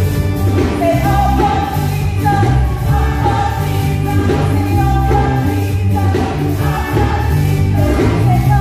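Gospel music played loud through the church's speakers: a group of voices singing held notes over a repeating bass line and a steady beat.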